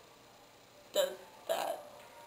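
A second of near-silent room tone. Then a girl's voice gives two short bursts: a single spoken word, then a brief hiccup-like sound.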